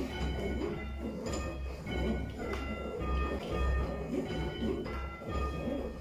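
Church tower bells rung full-circle by rope, heard from the ringing chamber below: a run of bell strikes roughly every half-second to second, each leaving overlapping ringing tones, over a low rumble.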